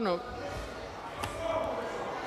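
Faint voices murmuring in a large assembly hall, with a single sharp knock a little over a second in.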